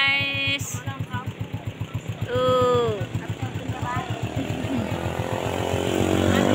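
A small engine running steadily with a rapid, even putter of about eight beats a second. People's voices come over it: a drawn-out hum at the start, a short call about two and a half seconds in, and talk near the end.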